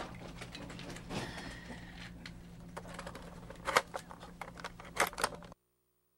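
Scattered clicks and rustling handling noises over a steady low hum, with a few sharper clicks late on; the sound then cuts off abruptly into dead silence as the recording stops.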